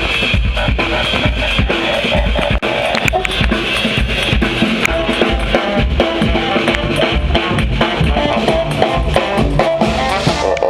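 Live band playing: a drum kit keeping a steady, busy beat with hand drums and tambourine, and trombone and saxophone coming in with held notes about halfway through.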